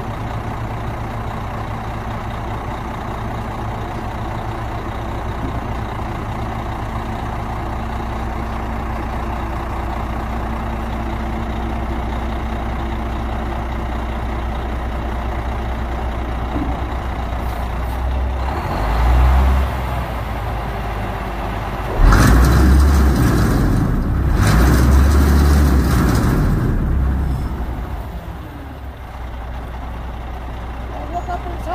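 Cummins diesel engine of a 2000 International 2574 dump truck running steadily while its hydraulic hoist raises the dump bed. About 18 seconds in there is a brief louder swell, and from about 22 to 27 seconds a much louder, noisier stretch covers the engine before it settles back.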